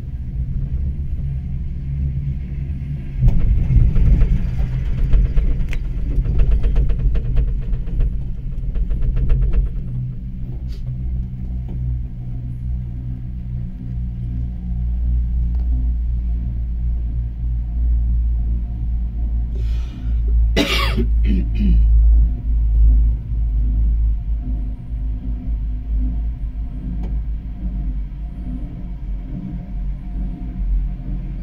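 Chairlift ride heard from the chair: a steady low rumble with wind on the microphone. About three seconds in, a fast rattling clatter starts and lasts some seven seconds. About twenty seconds in comes a brief high sound that falls in pitch.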